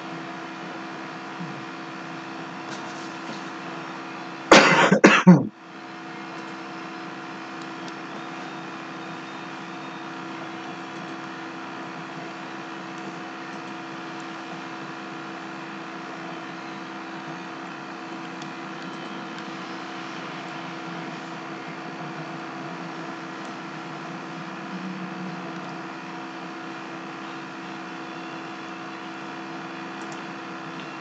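A person coughs once, a short loud burst with two or three hacks, about four and a half seconds in. Behind it is a steady hum with several fixed tones.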